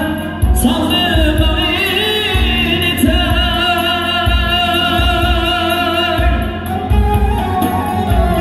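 Live amplified male singing of an Uzbek pop song medley, backed by a band with sustained melodic accompaniment and a steady deep drum beat.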